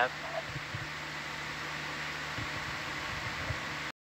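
Steady hiss and low hum of the control-room audio feed, with a few faint low thumps. The sound cuts off abruptly just before the end.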